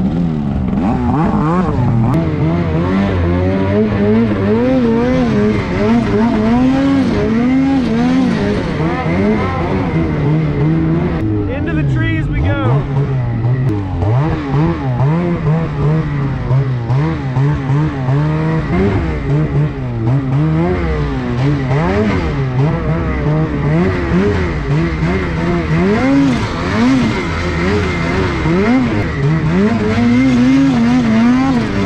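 Two-stroke snowmobile engine ridden through snow, its pitch rising and falling continuously as the throttle is worked on and off.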